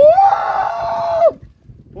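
A person's loud, high-pitched scream, held on one pitch for just over a second, then cut off.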